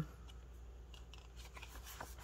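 Faint rustles and light ticks of glossy photo prints being shuffled and fanned out by hand, a few short ones in the second half.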